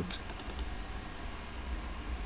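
A quick run of four or five light computer clicks in the first half-second, made while a word in the document is selected and highlighted, over a faint steady low hum.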